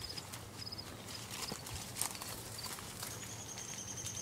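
Faint outdoor background: short runs of quick, high chirps repeating every half second or so, a thin high steady tone joining near the end, and a few scattered light clicks.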